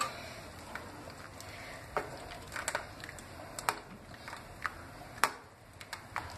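Steel spoon knocking and scraping against the rim of a pan and a glass bowl while thick cooked dal is ladled out: a few light, scattered clicks, the sharpest a little after five seconds.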